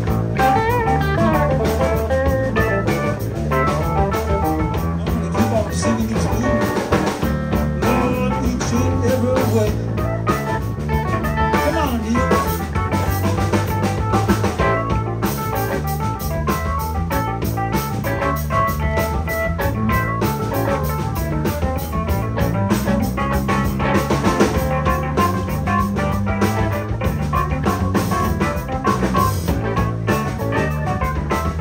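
Live blues band playing an instrumental passage: electric guitar lead with bent notes over electric bass, drum kit and keyboard.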